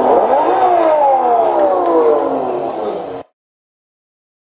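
RC drift car's electric motor revved once with the transmitter trigger. Its whine climbs briefly and then falls steadily as the motor spins down, and is cut off abruptly about three seconds in.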